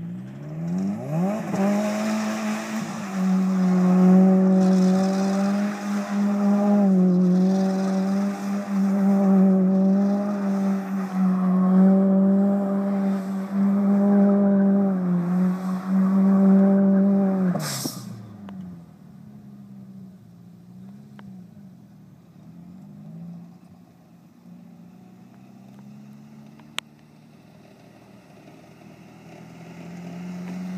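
Subaru WRX engine revved up and held at high revs for about sixteen seconds while the car spins its wheels on dirt, the revs dipping briefly and recovering, over a hiss of spraying dirt. The revs then drop away with a single sharp crack, and the engine carries on more quietly at lower, wavering revs.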